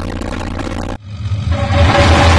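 Cinematic logo-sting sound effect: a low rumbling whoosh, then a second whoosh about a second in that swells louder, building toward the reveal of the logo.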